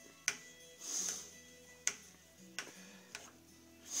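A threaded collar on a lathe's headstock spindle is unscrewed by hand to press a wooden spindle whorl off its jig. There are a few sharp clicks of wood and metal and a brief rasp about a second in.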